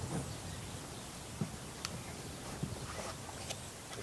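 Quiet outdoor background with a few faint, short clicks.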